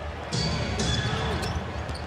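Basketball being dribbled on a hardwood court over the steady noise of an arena crowd.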